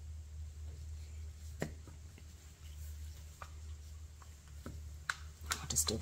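Scattered small clicks and taps from handling a silicone resin mold and a plastic mixing cup with a stirring stick, more of them close together near the end, over a low steady hum.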